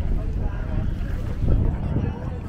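Wind buffeting the microphone, a low irregular rumble, with faint voices of people talking nearby; the loudest gust comes about three-quarters of the way through.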